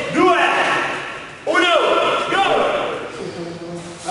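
Raised men's voices calling out in an echoing gym hall, with sudden thuds of gloved strikes on pads, the sharpest about a second and a half in.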